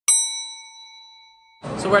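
A single bell-like ding sound effect, struck once at the start and ringing down over about a second and a half. Then it cuts to a busy hall's crowd noise, with a man starting to speak near the end.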